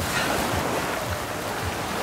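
Small waves washing up a sandy shore, a steady rush of surf.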